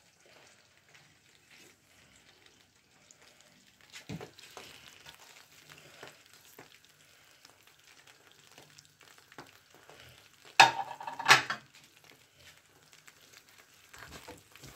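Thick toffee mixture cooking in a pan on a gas stove, giving a faint, steady sizzle. There is a knock about four seconds in, and two louder sharp knocks shortly before the end.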